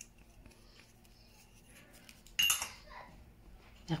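Quiet kitchen handling with one sharp clink of a utensil or container against a dish about halfway through, ringing briefly before it fades.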